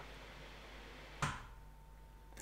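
Faint room hiss broken by a single short, sharp click a little over a second in.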